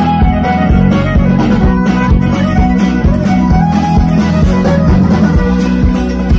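Live band playing high-energy, toe-tapping music amplified through PA speakers: strummed acoustic guitar over bass and drums.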